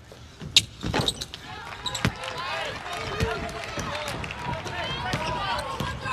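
Basketball court sounds in a near-empty arena: the ball strikes the rim and bounces on the hardwood, with a few sharp knocks in the first two seconds. Then come short squeaks and players' voices calling out as the ball is brought up the floor.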